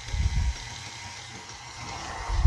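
KitchenAid stand mixer running with its dough hook, kneading a very dense bagel dough: a steady motor whine, with low thuds in the first half second as the dough knocks the machine about.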